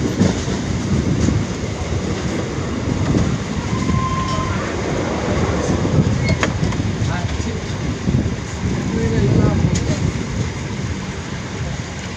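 Passenger train running, heard from an open coach window: a steady rumble of the wheels on the rails mixed with wind, with a few sharp clicks from the track. A brief high tone sounds about four seconds in.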